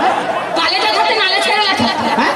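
Men talking over handheld stage microphones.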